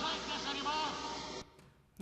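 A man's voice from a film clip, played back degraded, masked by a dense hiss and cut off near 8 kHz, to give an impression of how a disordered brain hears speech. It stops abruptly about one and a half seconds in.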